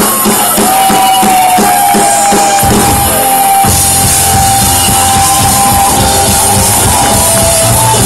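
Rock band playing live, loud: a drum kit keeping a steady beat of about four strokes a second under a long held note, with the bass and full band coming in about three seconds in.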